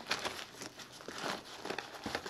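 Hands rummaging inside a stuffed nylon waist pack, with faint rustling, crinkling and small irregular clicks as packed items are shifted about.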